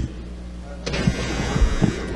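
Pause in a speech in a large legislative chamber: a low steady hum from the room and its sound system, with a brief bump at the start and faint background murmur and hiss from about a second in.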